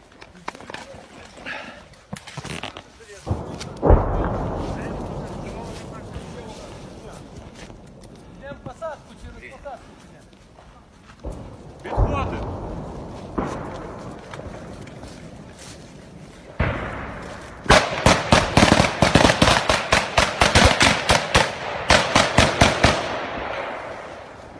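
Gunfire in woods. A loud single report about four seconds in rings out with a long echo, two more shots come around twelve and thirteen seconds, and near the end there are about five seconds of rapid, continuous shooting, the loudest part.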